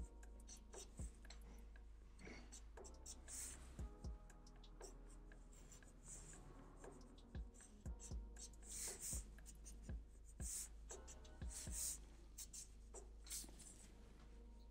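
Faint scratching of a black marker pen on paper in many quick, short strokes as fine sketchy lines are drawn.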